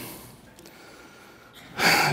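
A quiet pause with faint room tone, then a man's sharp intake of breath near the end.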